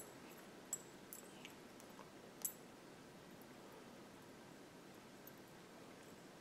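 Near silence, broken by a few faint, light clicks in the first half as a spinnerbait is handled while a soft-plastic paddle-tail trailer is worked onto its hook.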